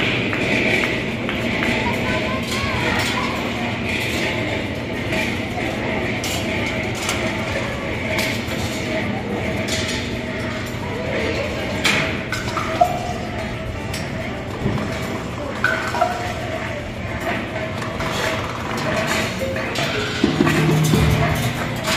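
Metal balls rolling and clinking through a large wire-track rolling ball sculpture, with a few sharper clicks past the halfway point, over steady crowd chatter.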